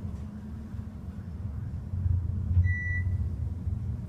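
Westinghouse hydraulic elevator car travelling with a steady low rumble, and a single short electronic chime from the car about two and a half seconds in.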